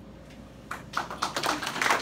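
A small audience starts to applaud, a few scattered claps at first that quickly thicken into steady clapping.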